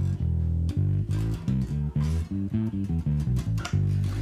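Waterstone five-string electric bass played fingerstyle: a busy line of short plucked notes, one held a little longer near the start.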